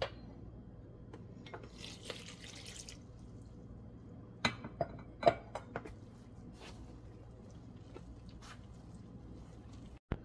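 Warm water poured into a plastic bowl of flour and stirred in with a spatula: a short splashing hiss about two seconds in, then a few sharp clicks and taps of the spatula against the bowl as the wet flour is mixed.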